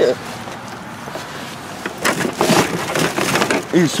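Cardboard box and packing material being handled and pulled open, with a run of rustles, scrapes and crackles starting about halfway through.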